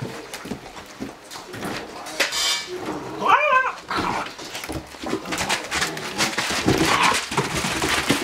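Great Dane puppies play-fighting, with scuffling and rustling on bedding and one short, high, wavering puppy yelp about three seconds in.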